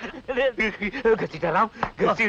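A man's voice in quick, choppy bursts, its pitch bending up and down.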